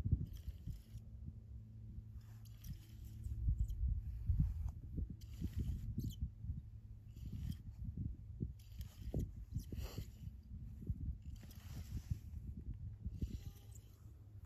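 Handling noise from a small ice-fishing spinning reel as line is wound in by hand: irregular short rustles and scrapes, one or two a second, over a steady low rumble.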